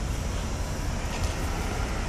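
Steady low rumbling background noise with no distinct events, typical of urban or traffic ambience.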